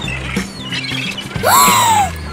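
Cartoon background music with a steady bass line. About one and a half seconds in, a loud cartoon sound effect cuts in: a squawk-like pitch glide that shoots up and then slides slowly back down.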